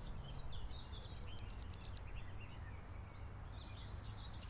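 Birdsong: several birds chirping, with one bird giving a fast run of about eight high, sharp downward-sweeping notes about a second in, the loudest sound. A low steady rumble runs beneath.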